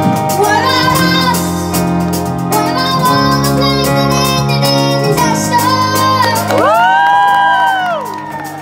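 A woman and a boy sing a pop ballad live over steady band accompaniment, the woman's voice early and the boy's voice later. Near the end the boy sings a long held note that rises and falls in pitch.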